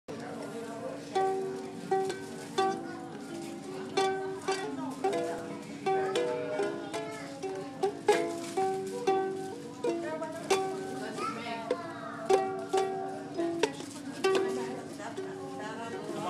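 Small ukulele strummed, a run of chords, each stroke sharp and then ringing briefly before the next.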